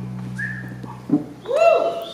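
A held low chord from the band dies away over the first second, then a short whistle and a couple of hooting 'woo' calls from a voice in the hall.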